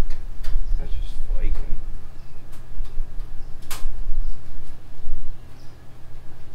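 A few sharp knocks from the sheet-metal body of a 1962 Willys wagon as it is shifted by hand, the loudest about three and a half seconds in, over a steady low hum.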